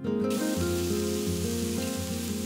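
Vegetables and hops shoots sizzling in a stainless steel frying pan, a steady hiss, under background music of held notes that change in steps.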